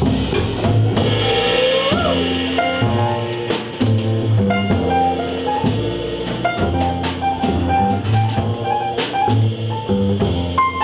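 Live jazz combo playing an instrumental passage: double bass, grand piano and drum kit with cymbals, with no vocal. A short rising slide sounds about two seconds in.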